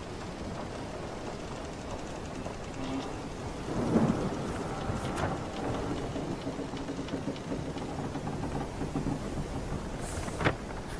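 Sailing-ship ambience mix: a steady rushing wash of water with a louder swell about four seconds in and a sharp knock just after five seconds. Faint low creaks of wooden timbers run through the second half.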